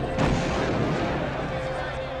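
A single loud bang like a gunshot or blast about a quarter of a second in, its rumble dying away over about a second, over a steady music drone.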